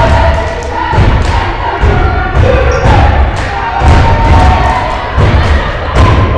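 Basketball game in a gym: the ball thumping on the hardwood floor again and again, with crowd noise and short squeaks from sneakers on the court.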